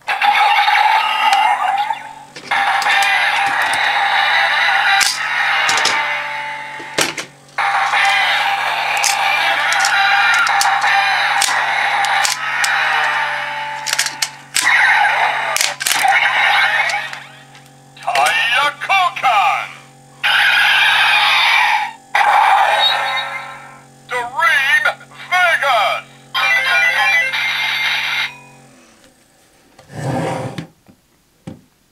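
Kamen Rider Drive transformation belt toy playing its electronic sounds through its small speaker: a looping standby tune with steady low tones, under Japanese voice calls and sound effects that come in stretches with short breaks, and a few sharp plastic clicks as the toy car and wrist brace are worked. The calls announce the tire change to Dream Vegas ('Tire Koukan! Dream Vegas!').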